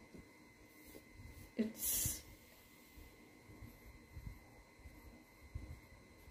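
Faint pencil-on-paper writing with soft irregular knocks as an answer is written into a workbook. About one and a half seconds in there is a short voice sound, then a sharp breath-like hiss.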